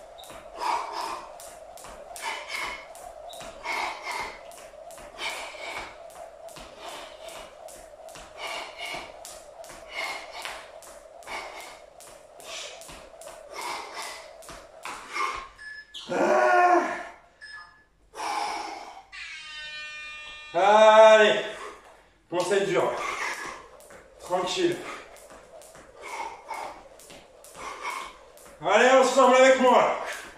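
Jump rope slapping a tiled floor as the jumper lands, about two strikes a second. The rope stops about halfway through for a rest, with loud breathing and vocal sounds from the jumper, and the skipping starts again more sparsely near the end.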